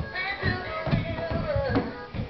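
Big Mouth Billy Bass singing fish toy playing its song: a sung line over a steady beat, with one held note that drops in pitch near the end.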